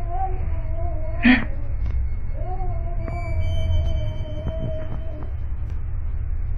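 Drawn-out wailing presented as a child crying: two long, wavering cries, the second about three seconds long, over a steady low hum, with a short loud burst about a second in.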